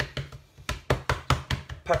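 Fingertips patting flatbread dough out flat on a worktop: a quick run of soft taps, about five a second.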